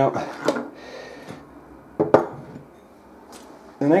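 Handling sounds on a wooden desk: a sharp knock about two seconds in as a screwdriver is set down, with a fainter tap near the end.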